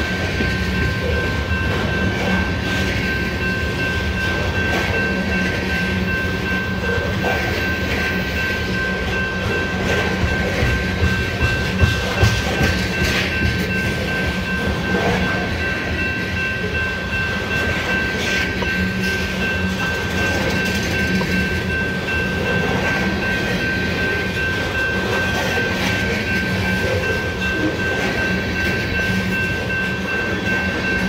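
Freight train of tank cars rolling past close by: a steady rumble of wheels on rail with clicking over the rail joints, a few louder clacks about twelve seconds in. A steady high-pitched tone is held throughout.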